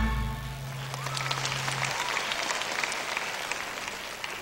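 A live band's music cuts off, leaving a low note ringing for about two seconds, while a theatre audience applauds.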